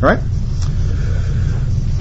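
A man says "right" once, then pauses, leaving only a steady low rumble in the background.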